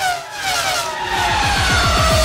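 A racing-car engine sound effect sweeping past in an animated logo sting, its note falling in pitch and then levelling off, over electronic music.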